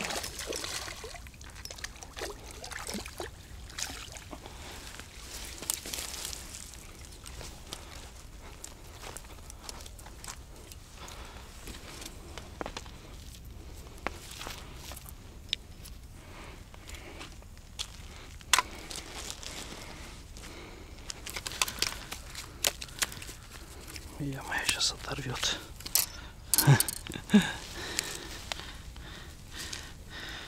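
Handling noises from a fish being landed and unhooked in a landing net: a splash at the very start as the net comes out of the water, then rustling and scattered clicks and knocks, busier in the last few seconds.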